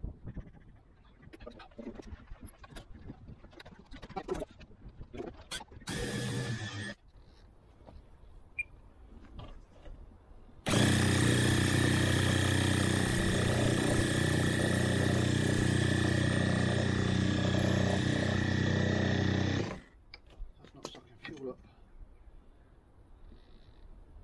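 Handheld electric starter spinning a model aircraft engine by its spinner: a short burst of about a second, then a steady run of about nine seconds that stops abruptly. The engine turns over without firing, as it isn't drawing fuel.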